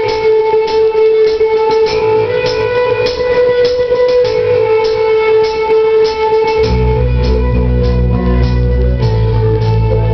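Live rock band playing the opening of a ballad: guitar with a long held note and regular picked strokes, joined by heavy low bass about two-thirds of the way through.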